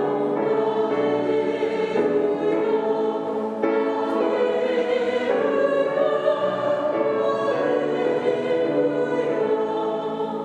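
Church choir singing a hymn verse together, with long held notes that change every second or so.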